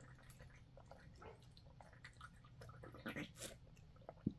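Faint sips and swallows of coconut water drunk from a Tetra Pak carton, with a few small wet clicks, a little louder about three seconds in.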